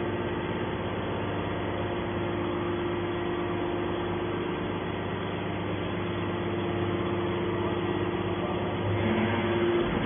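Hydraulic pump and motor of a Y81T-135T scrap-metal baler running with a steady hum while the ram pushes a compressed bale out of the chamber. Near the end the hum grows a little louder and a new tone joins it.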